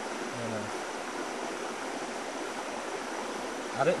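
A steady, even hiss of background noise, with a short low voiced 'mm' from a man about half a second in.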